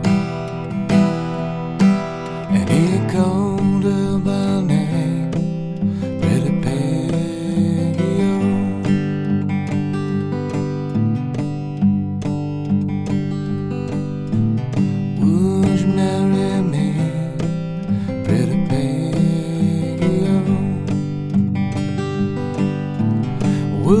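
Steel-string acoustic guitar played fingerstyle on its own, an instrumental break in the song, with a few notes sliding in pitch.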